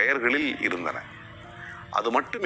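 A man's voice speaking in Tamil for about the first second, then a soft, steady held chord of background music under the pause.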